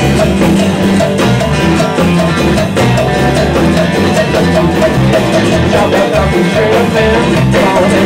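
Live rock band playing a blues number: acoustic and electric guitars, bass and drums over a steady beat.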